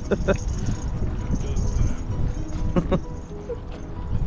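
Steady low rumble of wind buffeting the microphone, with two short vocal exclamations from a man, one just after the start and one near three seconds in.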